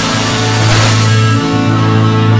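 A blues band playing, recorded live, with a strong steady bass note under the other instruments.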